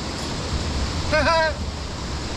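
Steady rush of a swollen, fast-flowing stream under a footbridge, with wind buffeting the microphone. A short laugh breaks in about a second in.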